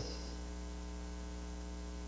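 Steady electrical mains hum, a stack of even unchanging tones, with faint hiss underneath, from a worn EP-speed VHS recording.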